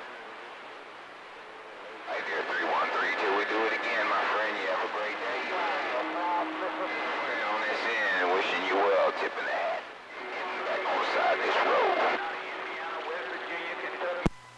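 CB radio receiver hissing with static for about two seconds, then voices of other stations coming through the radio's speaker, thin and hard to make out, with a few steady whistle tones under them.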